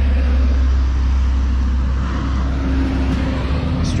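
Steady low rumble of road traffic, with a vehicle's engine hum standing out for a second or so past the middle.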